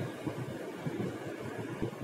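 Quiet pause: low room noise with faint scattered rustles of handling and a small click near the end.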